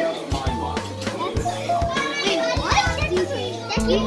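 Arcade din: background music with a steady bass line, children's voices, and short clicks from the games.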